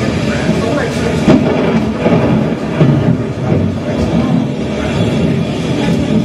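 Voices mixed with live band instruments, with a few sharp knocks or drum hits among them.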